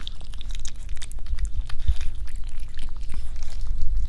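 A cat eating close to the microphone: a quick, uneven run of small wet chewing and mouth clicks.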